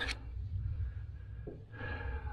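Low, steady room noise with a faint tick about a second and a half in and a short breath near the end.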